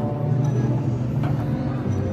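Large steel Cyr wheel rolling over cobblestones, a steady low rumble, with backing music faint beneath it.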